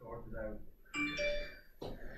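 Smartphone notification chime about a second in: a short electronic ding of several clear notes that fades within about half a second. It signals that the voice command to switch on the TV went through.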